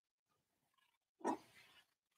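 Near silence, broken about a second and a quarter in by one brief, grunt-like throat or nose sound from the man in front of the microphone.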